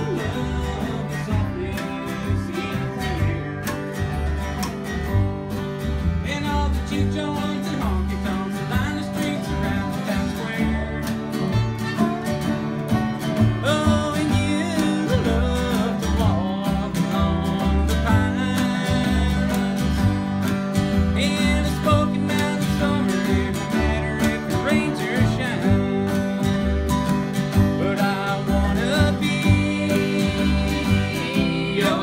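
A small acoustic bluegrass band playing live: strummed and picked acoustic guitars over a steady pulse of upright bass notes, with a man singing.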